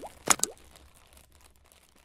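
Logo-intro sound effects: two sharp pops in the first half second, each with a quick upward pitch sweep. A faint tail then fades away.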